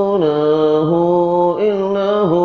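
A single man's voice chanting Islamic dhikr in long, held notes. The pitch slides down a step about a fifth of a second in, holds, then climbs back. A brief dip and rise come about one and a half seconds in.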